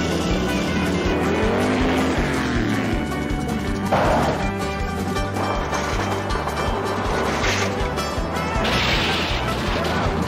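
A TV car-chase soundtrack: music over car engines. An engine note rises and falls in the first three seconds, a sharp crash-like impact comes about four seconds in, and bursts of skidding noise follow near the end.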